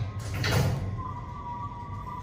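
Hitachi lift doors sliding, a rush of noise peaking about half a second in. From about a second in, the lift's distorted chime holds two close, wavering tones.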